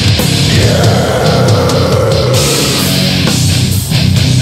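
Loud extreme metal from a 1995 demo recording: heavily distorted electric guitars and bass playing a dense, aggressive passage, with a brief drop in loudness just before the end.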